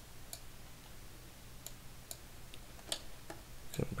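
Faint, irregularly spaced clicks of a computer mouse button, about six over a few seconds, over a low steady electrical hum.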